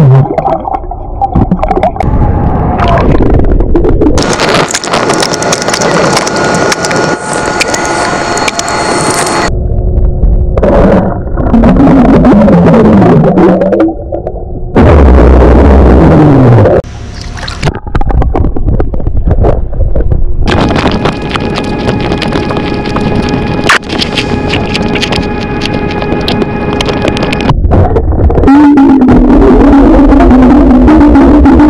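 A man burping and blowing bubbles underwater in a swimming pool, heard through an underwater microphone: gurgling bubble bursts and burps with pitches that glide up and down, over a steady rushing water noise, in several separate takes.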